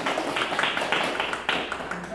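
A small group clapping: a dense run of hand claps that thins out near the end.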